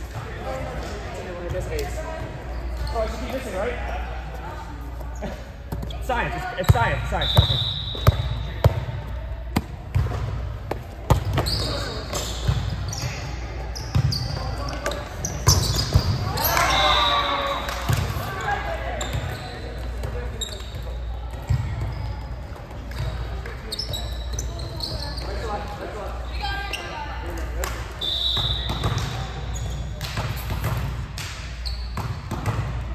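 Volleyball rally on an indoor court: sharp ball contacts, short squeaks of sneakers on the court surface, and players' shouts, all echoing in a large gym hall. The ball hits come thickest about a third of the way in.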